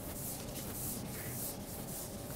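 Repeated rubbing strokes on a chalkboard: a run of short, scratchy scrapes, several a second.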